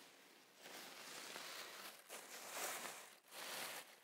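Acid-free tissue paper rustling and crinkling as a gloved hand spreads it over the dress and smooths it down in the box, faint and coming in several swells.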